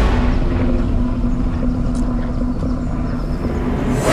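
Motorcycle engine running at low speed, a steady low hum over a heavy rumble of wind on the microphone.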